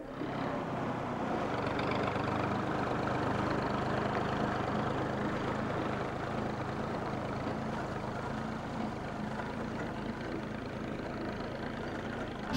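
Farm tractor engine running steadily as it pulls a loaded trailer, growing slightly fainter in the second half as it moves off.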